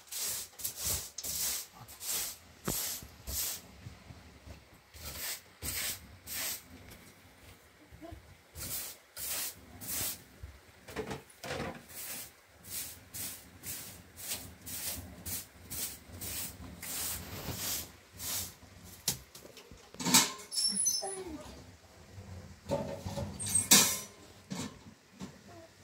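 Short straw hand broom sweeping a tiled floor in brisk strokes, about two a second with short pauses. A couple of louder knocks near the end.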